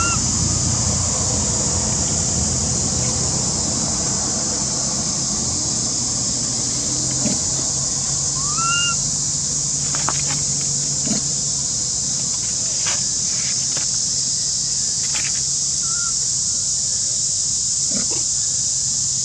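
Baby macaque giving short, high, rising-and-falling cries, once at the start and again about nine seconds in, over a loud steady high-pitched drone. A few faint knocks come in the later part.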